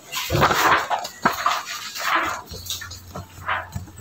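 Paper rustling in several short bursts as a printed sheet is handled close to the microphone, with one sharp click about a second in.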